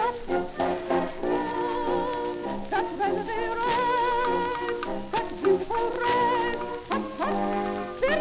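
Instrumental passage of a 1913 ragtime song, played from a 78 rpm His Master's Voice shellac record: a small accompanying band plays between sung lines, with held notes that waver in vibrato around the middle.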